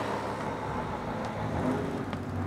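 Steady background street traffic noise: an even, low rumble of vehicles.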